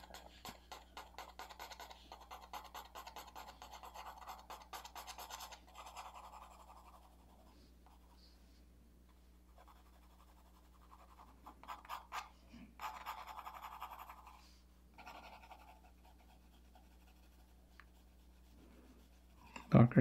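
Graphite pencil (2B) scratching on drawing paper in quick back-and-forth shading strokes: a dense run of strokes for the first several seconds, then pauses broken by shorter bursts of shading.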